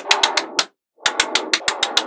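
Small metal magnetic balls clicking as blocks of them are snapped onto a row one after another: rapid sharp clicks, about seven a second, in two runs with a brief pause a little before the middle.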